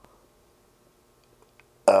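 Near silence: room tone with a faint steady hum. A man's voice starts with "uh" near the end.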